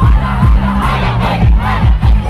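Live concert: an amplified song with a heavy, pounding bass beat over the PA, mixed with a crowd shouting and cheering close to the phone.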